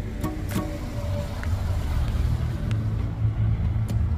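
A car driving toward the microphone, its engine and tyre noise growing louder in the second half, with music playing over it.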